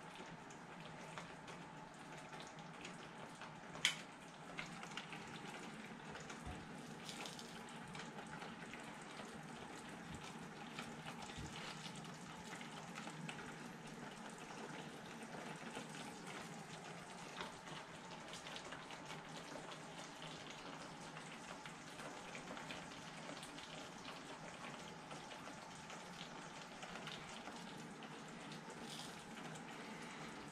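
Tomato sauce simmering in a pan, a faint steady bubbling dotted with small pops and crackles. One sharp click about four seconds in.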